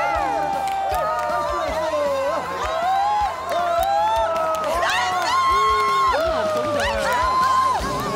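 Supporters cheering, screaming and whooping to celebrate an equalising goal, mixed with background music.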